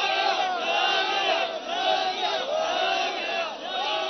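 A large crowd of men shouting and chanting together, the same short phrase rising and falling about once a second.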